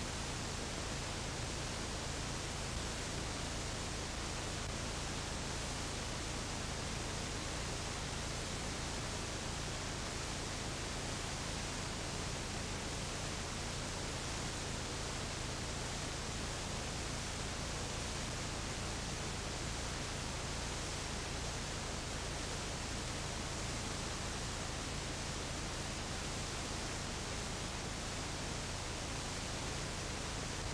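Steady hiss with a low hum underneath: the blank soundtrack of an old, worn videotape with no programme sound on it.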